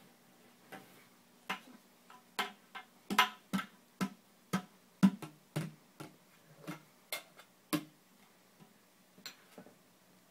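Toy mallet knocking on the plastic lid of a metal can, struck over and over at an uneven pace of one or two hits a second. The hits are loudest around the middle and thin out to a few faint taps near the end.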